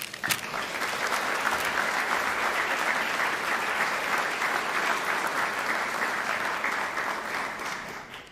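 Audience applauding: dense, steady clapping that fades out near the end.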